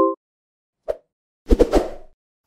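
Sound effects of an animated logo intro: a short pitched blip of several tones at the start, a small pop about a second in, then a louder noisy burst lasting about half a second near the end.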